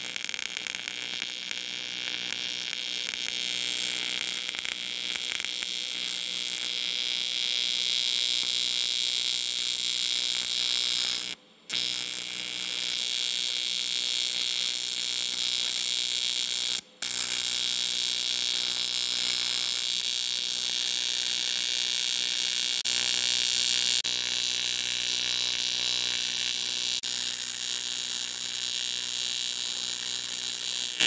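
AC TIG welding arc buzzing steadily while cast aluminum is welded at about 130 amps with filler rod. The arc stops for a moment twice, about 11 and 17 seconds in, then strikes again.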